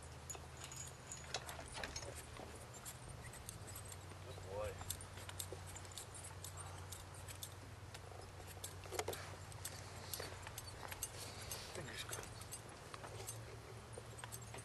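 Metal horse-harness hardware, chains and buckles, jingling and clinking in scattered bursts as horses are hitched to a chuckwagon, over a steady low hum.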